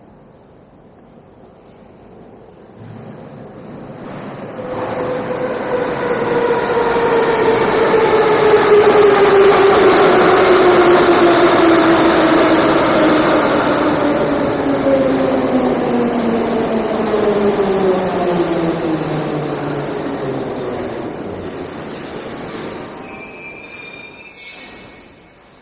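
Moscow metro train pulling into the station and braking: its whine slides steadily down in pitch as it slows. It builds up to loud, then fades as the train comes to a stop.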